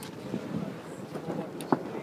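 Wind rushing over the microphone on a sailboat under way, with one sharp knock near the end.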